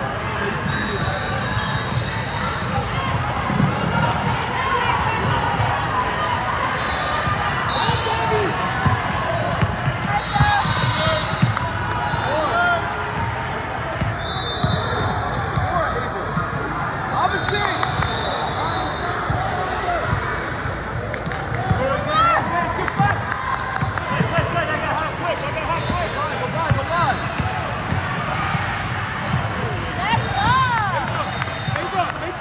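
Indoor basketball game sounds: the ball bouncing on a hardwood court, many short sneaker squeaks, and players and spectators calling out, all over the ring of a large hall.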